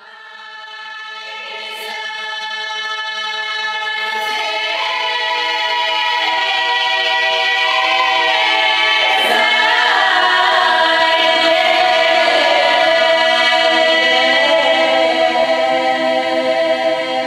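Large Bulgarian women's folk choir singing a Bulgarian folk song in sustained, close-held harmony. The choir starts softly and grows steadily louder over the first several seconds, then holds at full voice.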